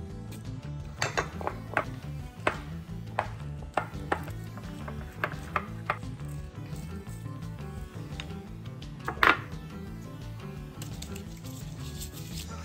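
Wooden spoon knocking and scraping against a ceramic bowl while stirring, a run of sharp clicks with one louder knock about nine seconds in, over background music.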